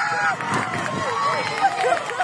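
Several people shouting and calling out at once, overlapping raised voices, with a few sharp knocks near the end.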